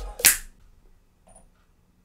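A single sharp finger snap about a quarter second in, bright and short.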